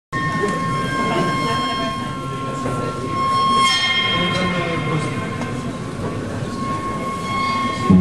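Several held high tones overlap in a long drone, one steady tone running throughout and others entering and fading, over a rough, irregular low rumble. This is the opening of a free improvisation.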